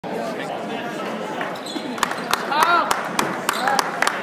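Basketball dribbled on a hardwood gym floor, bouncing about three times a second from about halfway in, with a few short squeaks, over the chatter of a crowd in a large echoing hall.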